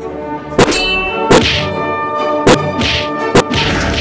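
Four sharp cartoon impact sound effects, ringing and clang-like, spaced roughly a second apart over background music of held notes.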